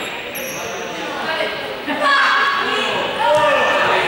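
A ball bouncing on a sports-hall floor amid young people's voices calling out, echoing in the large hall; the voices grow louder about two seconds in.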